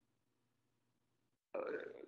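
Near silence in a small room, then about a second and a half in a man's drawn-out hesitation sound, "uh".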